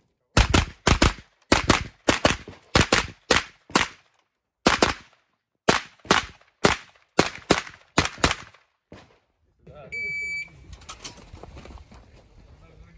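Rapid strings of shots, mostly fired in quick pairs, from a 9mm AR-style pistol-caliber carbine (Inter Ordnance M215 with a MOLOT compensator), running for about nine seconds. About ten seconds in comes a single half-second electronic shot-timer start beep.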